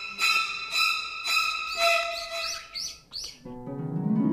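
A high-pitched chirping call repeating about twice a second, breaking into a quicker run of shorter falling notes and stopping about three seconds in. Plucked harp music starts near the end.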